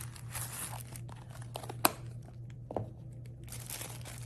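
Tissue paper crinkling and rustling as it is handled, with a sharp click a little under two seconds in and a softer one near three seconds.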